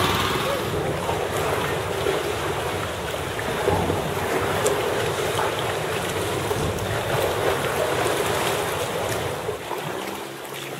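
Sea water sloshing and lapping around inflatable canoes and paddles, with wind buffeting the microphone: a steady, noisy wash.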